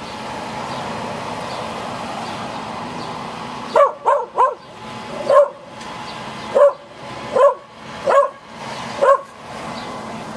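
A small dog barking about eight times in short, sharp barks, starting about four seconds in, over the steady running hum of a flatbed tow truck's engine.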